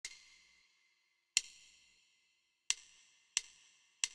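Count-in from a backing track, played as short hi-hat clicks: two slow ticks, then quicker ticks at twice the pace, counting the bar in before the bass line starts.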